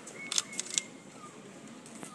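Two quick camera shutter clicks within the first second, over a quiet background.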